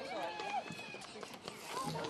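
Voices shouting and calling across a football pitch, with a few light knocks among them.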